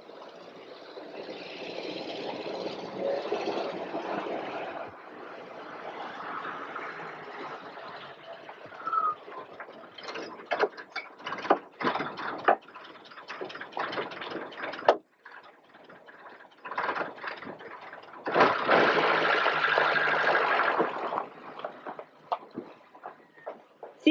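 A car drives in over dirt ground, its noise swelling and fading over the first few seconds. Then comes a run of sharp clicks and knocks, and later another loud rush of noise.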